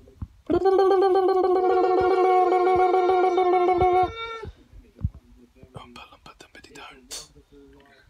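A man's voice holding one long, high sung note with a wavering pitch for about four seconds, stepping up briefly just before it stops; faint clicks and rustles follow.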